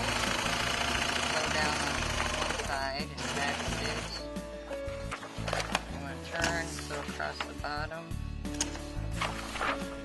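Sailrite Professional Long Arm four-point zigzag sewing machine stitching through polyester webbing, loudest in the first three seconds, with background music and faint voices.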